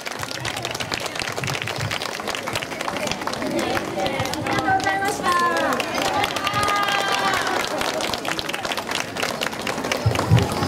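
Audience clapping steadily, with voices calling out around the middle.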